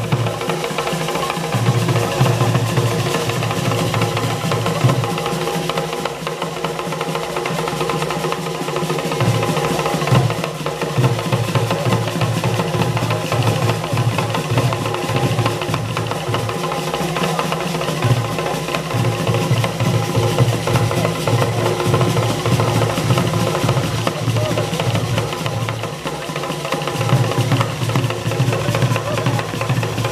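Live traditional Ugandan drum music: large hand drums beaten in a fast, continuous rhythm, with wooden knocking percussion and sustained tones over it.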